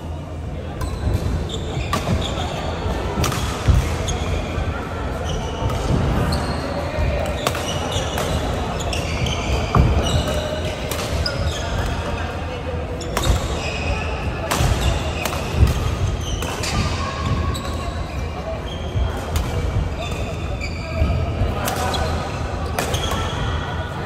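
Badminton rally in a large hall: irregular sharp racket strikes on the shuttlecock and footfalls, with short high-pitched shoe squeaks on the court floor and voices in the background.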